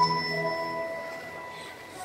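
A single bell-like chime in the stage show's music, struck once at the start and ringing as it slowly fades away.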